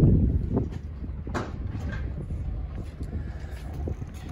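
Low, uneven rumble of wind buffeting the microphone, strongest at the start and easing off, with a couple of light knocks about half a second and a second and a half in.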